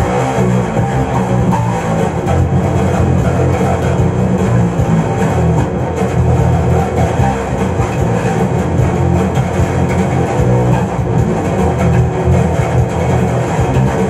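Instrumental rock music with a prominent electric bass guitar line being played, heavy in the low end, without vocals.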